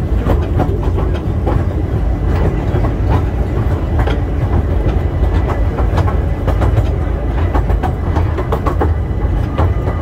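Open passenger carriages of a park steam train rolling along the track, heard from on board. There is a steady low rumble with frequent irregular clicks and knocks from the wheels and couplings.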